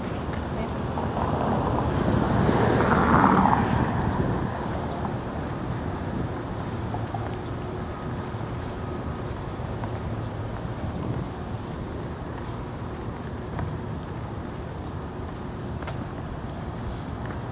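Downtown street traffic: a steady low rumble, with a vehicle passing that swells up, loudest about three seconds in, and fades away.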